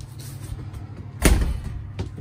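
A single heavy thump about a second in, over a steady low hum.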